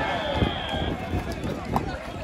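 Volleyball players and onlookers shouting and calling during a rally on an outdoor court, with a sharp hit of the ball about half a second in and a lighter knock near the end.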